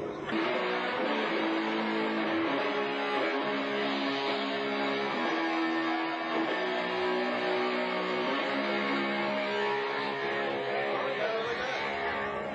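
Electric guitar music: held chords that change every second or two, with little drumming to be heard.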